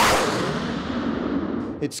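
Panavia Tornado fighter-bomber's twin jet engines roaring in a low, fast flyby: the noise is loudest just as it passes at the start, then fades steadily as the jet flies away.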